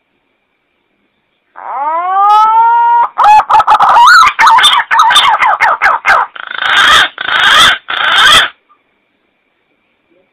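Green pigeon (punai) calling. A whistled note rises and holds from about a second and a half in. It runs into a string of quick warbling whistles and ends in three longer, harsher notes, with silence before and after.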